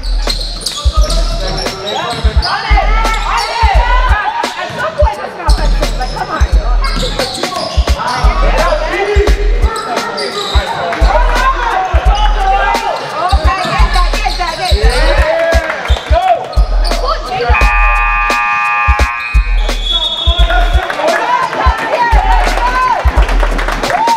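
Basketballs bouncing on a hardwood gym floor with sneakers squeaking and players shouting, over music with a steady bass beat. Near the end a steady horn-like tone sounds for about two seconds.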